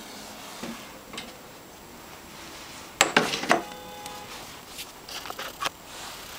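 Sharp clicks and knocks of hard objects being handled. The loudest cluster comes about halfway through, and one knock leaves a short, clear ringing tone. Lighter clicks come before it and near the end.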